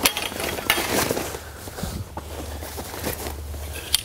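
Metal frame bars of a layout blind clinking and knocking as they are handled, with the fabric cover rustling. A few sharp clicks, one right at the start and another just before the end.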